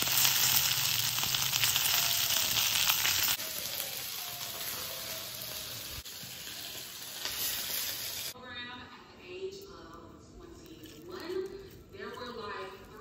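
Whole fish frying in hot oil in a non-stick pan, a steady sizzle that drops in level about three seconds in and stops about eight seconds in.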